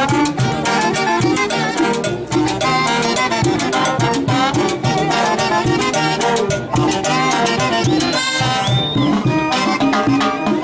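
A brass band playing a Latin dance tune live, with trumpets, saxophones and sousaphones over congas, timbales and drum kit keeping a steady beat. About eight seconds in, a high whistle-like note rises and holds briefly.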